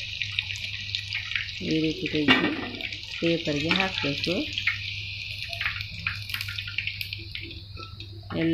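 Battered chicken pieces deep-frying in hot oil in a kadai: a steady sizzle with scattered crackles throughout.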